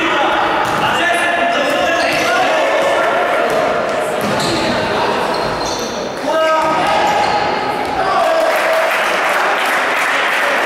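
Basketball game in a large gym: a ball bouncing on the wooden court amid players' shouts, with a steady bed of hall noise.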